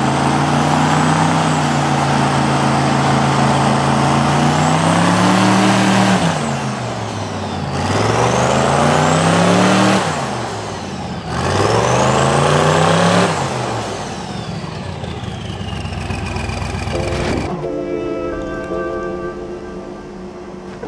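900-horsepower twin-turbo airboat engine and two-blade propeller running hard, revving up in three surges and easing off between them as the boat drives itself up onto its trailer, then running lower. It stops abruptly near the end, where music with steady held notes comes in.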